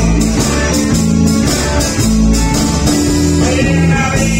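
Live rhythm and blues band playing: amplified electric guitar over sustained bass notes and a steady drum beat.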